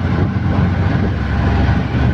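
Auto rickshaw engine running and road noise as it drives through traffic, heard from inside its open cabin as a steady low rumble.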